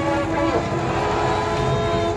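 Festival crowd noise with several long, steady held tones running through it and a wavering, pitched voice-like sound in the first half second.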